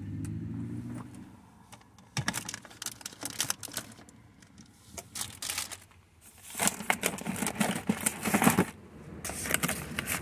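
Packaged groceries and cardboard boxes being handled and pushed onto cabinet shelves: a run of light clicks and knocks, then louder scraping and rustling about two-thirds of the way in.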